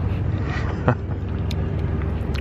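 Steady low outdoor rumble, with a single short click a little under a second in.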